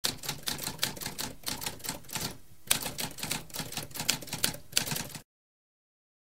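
Typewriter typing: a quick run of key strikes with a short pause about halfway, stopping suddenly about five seconds in.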